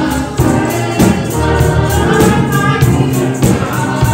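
Gospel praise song sung by a small group of voices, with a tambourine struck on a steady beat.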